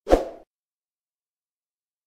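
A single short pop with a whooshing tail, over within half a second: the sound effect of a YouTube subscribe-button overlay animation disappearing.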